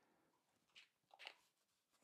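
Near silence, with two faint, short squishes of a cleaning sponge being squeezed to work leather cleaner into a lather, about a second in.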